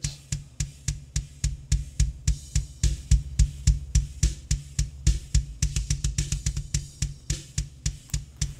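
Recorded rock drum kit playing back from a DAW: a fast, steady run of heavy kick drum hits with snare and cymbals over them. The kick is being EQ'd on an SSL channel strip, with a little extra boost around 60 Hz.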